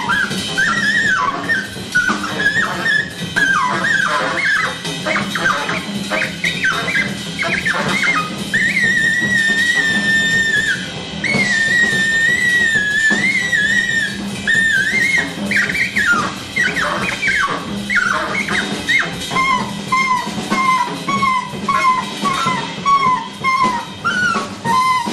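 Live jazz trio: an alto saxophone plays fast high-register runs and squeals, holds one long high note about a third of the way in, then repeats a pulsing note over and over near the end, over upright bass and drum kit.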